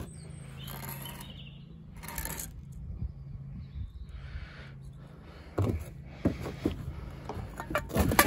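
A few light knocks and scrapes of hand tools on stone and mortar as a spirit level is set on a bedded stone, over a low steady hum. The knocks come in a cluster in the second half.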